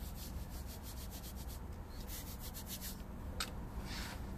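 Fingers squeezing and pressing into a bowl of fine scouring-cleanser powder, giving crisp, crunchy rubbing in two quick runs of several strokes a second, with one sharper crackle near the end.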